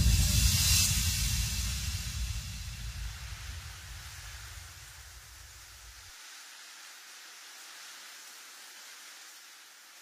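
Closing tail of an uplifting trance track: a deep bass rumble and a wash of white noise fade out together after the full mix stops. The bass cuts off about six seconds in, leaving only a faint hiss.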